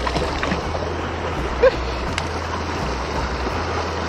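Creek water running steadily over a small riffle of rocks and roots, with one brief short sound about one and a half seconds in.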